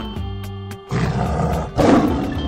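A lion roaring over steady background music, starting about a second in and loudest near the end.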